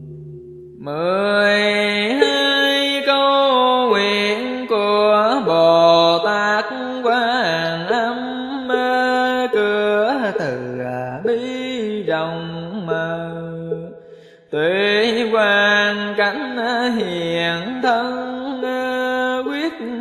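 Buddhist devotional chanting: a sung chant in held, melodic notes that step and slide between pitches. It begins just under a second in, breaks off briefly about three-quarters of the way through, and resumes.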